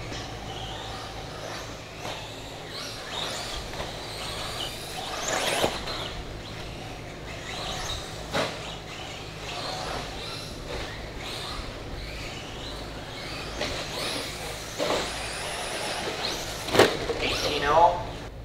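Electric RC buggy (Team Associated RC10B6) running laps on a dirt track: its motor and drivetrain whine swells and fades several times as it accelerates and brakes through the corners, over a steady low hum.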